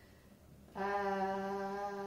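A woman's drawn-out, level-pitched "uhh", a hesitation sound held for more than a second. It starts about three-quarters of a second in, after a short quiet pause.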